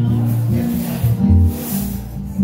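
Live acoustic guitar strumming chords over an electric bass, with no singing. The bass holds low notes that change every half second to a second.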